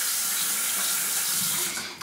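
Bathroom sink tap running in a steady stream of water, shut off near the end.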